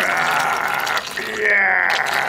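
Hot water running in a steady stream from a dispenser urn's spout into a paper cup with a tea bag in it, splashing as the cup fills.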